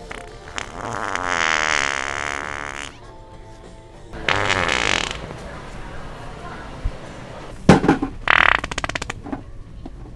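A handheld fart-noise toy playing fake fart sounds: one long, wet, rippling fart, a shorter one a little later, and a quick sputtering burst near the end.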